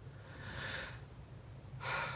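A man's soft breaths in a pause in speech: one about half a second in and another near the end, just before he speaks again, over a faint low hum.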